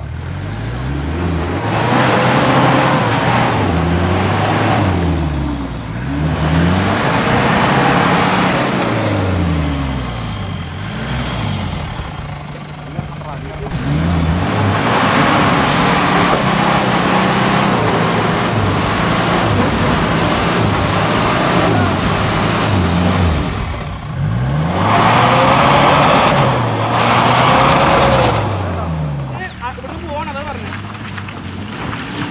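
Mitsubishi Pajero engines revving hard in repeated rising and falling surges as the 4x4s climb a muddy off-road track.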